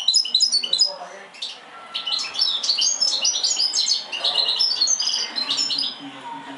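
Caged goldfinch × canary hybrid (mule) singing: quick twittering phrases and trills, a brief lull about a second in, then a long run of song.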